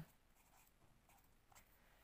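Faint scratching of a pen writing on paper, in a few short strokes.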